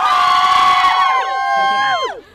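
A group of young women cheering together in one long, loud, held shout, several voices at different pitches at once, which slide down in pitch and tail off near the end.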